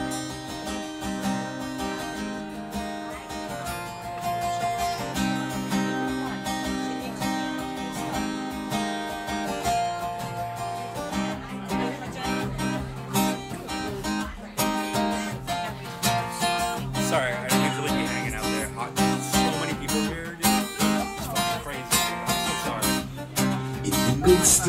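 Solo acoustic guitar playing a slow song intro, picking and strumming chords that ring on.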